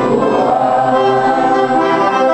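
Piano accordion playing a melody over sustained reed chords, the notes held for about half a second each before changing.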